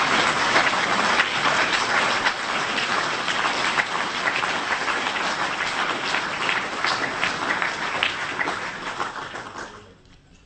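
A large audience applauding, a dense patter of many hands clapping that dies away near the end.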